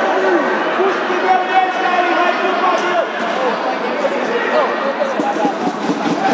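Many voices of spectators and players talking and calling out at once in a gymnasium hall, overlapping into a steady hubbub with no single voice standing out.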